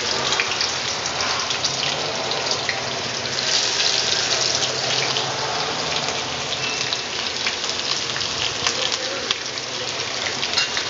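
Dry red chillies and sliced onions frying in hot oil in a black iron kadhai: a steady sizzle dotted with small crackles and pops, which grows louder right at the start.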